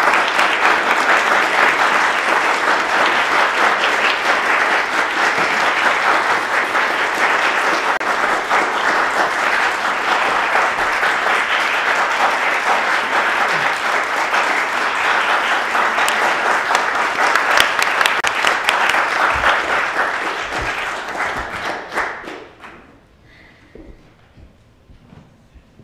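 Theatre audience applauding steadily, then tapering off about two seconds before the end.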